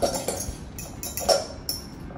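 A utensil stirring moist coleslaw and pineapple chunks in a glass mixing bowl, with irregular clinks and scrapes against the glass; the loudest clink comes a little over a second in.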